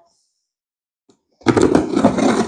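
Silence, then about one and a half seconds in a knife starts slicing through the packing tape on a cardboard box with a loud scraping, tearing noise.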